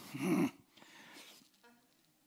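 A man's short, rough, breathy grunt into a microphone about a quarter second in, followed by fainter breathing.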